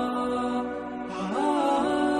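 Chanted vocal music: long held notes that slide up and down between pitches, dipping briefly about half a second in and rising again just after a second in.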